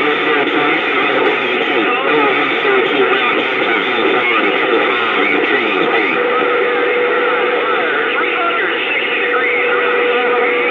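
CB radio receiving on channel 28: garbled, overlapping voices through static, with no clear words. A steady whistle joins about six seconds in.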